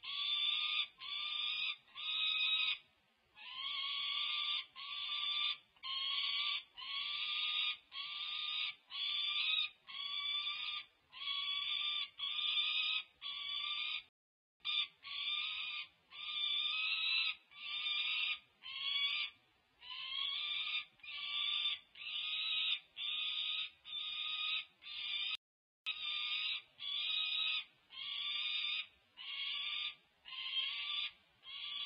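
Peregrine falcon chick's food-begging wail: harsh, drawn-out screams repeated about once a second, each just under a second long, with a short break about three seconds in and another near the middle. It is the begging call of a hungry chick while a sibling eats prey.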